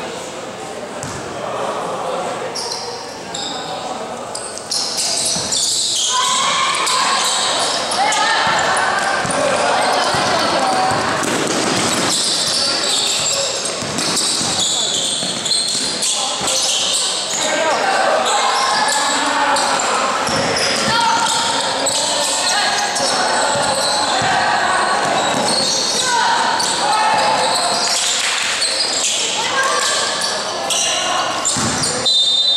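Youth basketball game in a large gym: a basketball bouncing on the court amid many voices calling and shouting, all echoing around the hall. The noise jumps up sharply about five seconds in and stays loud.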